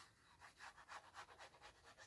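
Near silence, with faint rapid scratching from the nozzle of a liquid glue bottle being drawn along the edge of a sheet of paper.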